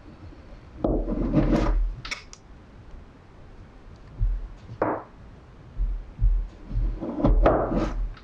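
Chef's knife slicing down through a log of rolled puff pastry dough onto a wooden cutting board: two cuts, about a second in and near the end, each a short scraping rasp ending on the board, with lighter knocks and a brief scrape between them as a slice is lifted off on the blade.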